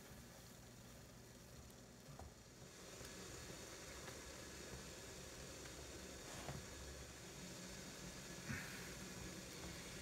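Faint, steady bubbling hiss of hibiscus jam at a rapid boil in a saucepan as it is stirred, with a few soft knocks.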